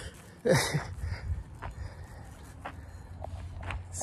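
A man's short laugh about half a second in, falling in pitch, then footsteps and a low rumble on the handheld phone's microphone as he walks.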